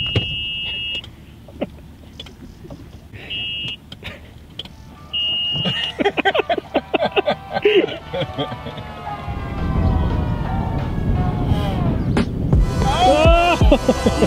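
Edited montage audio: three short, high-pitched electronic beeps in the first six seconds, then voices over music.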